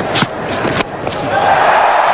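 Sharp knocks within the first second, among them a cricket bat striking the ball as it is hit a long way back down the ground. The crowd noise then swells.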